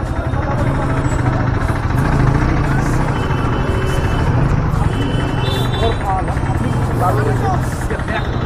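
Motorcycle engine running at low speed with street traffic noise and people's voices around it. Two short high-pitched tones sound, about three seconds in and again near five and a half seconds.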